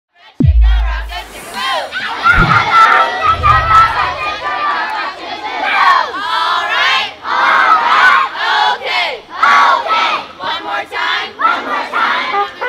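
A large group of children shouting and cheering all at once, many voices overlapping. A deep falling boom sounds right at the start, with low rumbles in the first few seconds.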